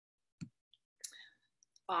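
Mostly silence, broken by a single sharp click about half a second in and a brief soft noise about a second in; a woman's voice starts just before the end.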